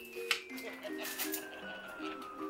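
Soft background music of held, sustained notes, with a short crinkle of a foil blind-bag wrapper being handled about a third of a second in.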